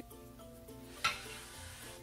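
A metal fork clicks against a plate about a second in, then scrapes for about a second as it cuts a piece of baked apple, over quiet background music.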